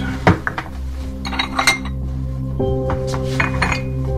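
Crockery clinking as tea is made: teacups and a teapot set down and handled on a kitchen counter, a sharp clink about a third of a second in and lighter clinks scattered through. Soft sustained background music runs underneath.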